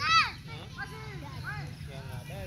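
Children shouting and calling to each other during a football game, many voices overlapping, with one loud high-pitched shout just after the start.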